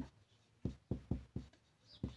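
Marker pen writing numbers and a division sign: four short strokes, about four a second, starting about half a second in.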